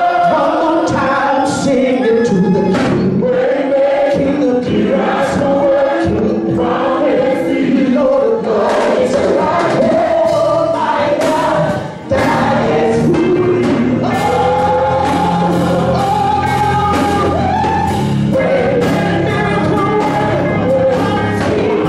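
Live gospel music: a lead singer on a handheld microphone with choir voices joining over a band with a steady beat. The sound dips briefly about twelve seconds in, then carries on with a held bass line.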